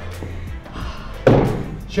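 Workout background music with a steady beat, and one sudden heavy thud a little past halfway through.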